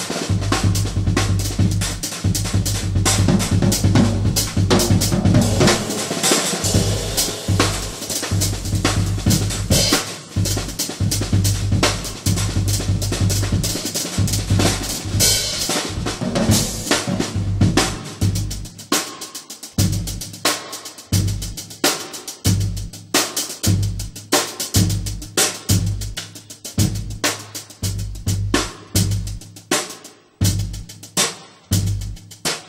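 Acoustic jazz drum kit played solo with sticks: fast, busy strokes across snare, toms, cymbals and bass drum. About two-thirds of the way through, the playing thins to sparser, evenly spaced strokes.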